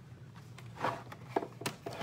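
A few light clicks and knocks of plastic cutting plates being handled and slid on the platform of a Big Boss die-cutting machine.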